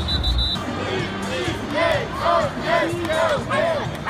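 A referee's whistle in three short blasts right at the start, then many voices shouting and yelling over one another in short, rising-and-falling cries.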